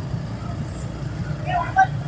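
Motorcycle riding through city traffic: a steady low engine and road rumble with a light haze of wind noise. A few faint words come in near the end.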